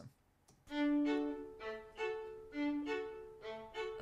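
Two violins playing a slow duet of long bowed notes in two parts, starting a little under a second in, each note swelling and fading.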